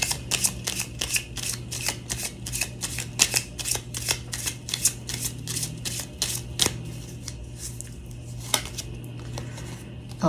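A tarot deck being shuffled by hand: a quick, dense run of card slaps and flicks for about five seconds, thinning to a few single snaps near the end as the clarifier card is drawn.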